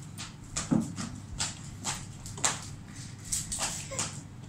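Metal bracelets and bangles being handled and a bracelet clasp being fastened: a string of about ten light, irregular clicks and clinks over a low steady hum.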